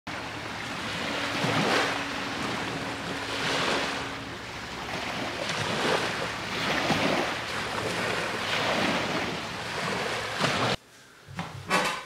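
Ocean waves washing in, swelling and fading every second or two; it cuts off suddenly near the end.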